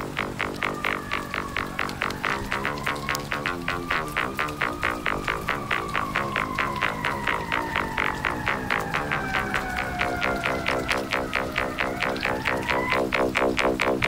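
Electronic synthesizer music: a fast, even pulsing beat of about four a second under a high gliding tone that slowly rises, sinks, then rises again and cuts off about a second before the end.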